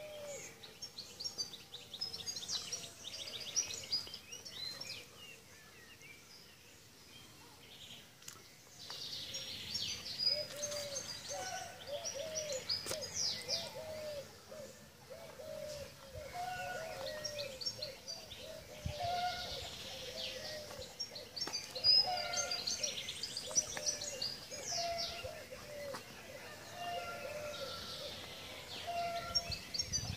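Birdsong from several birds: repeated bursts of high chirps and trills, and from about a third of the way in a lower short call repeated over and over, roughly once a second.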